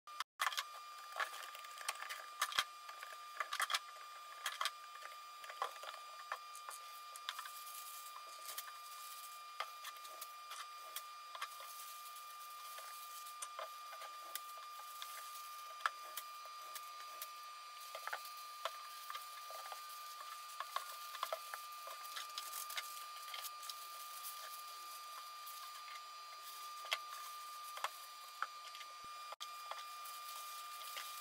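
Tissue paper and cardboard being handled while wrapping ceramic bowls: rustling and crinkling with frequent small clicks and taps. A faint steady whine runs underneath.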